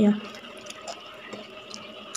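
A few faint, sparse crisp clicks from someone biting and chewing a piece of crispy fried fish skin, after a short spoken "ya" at the start.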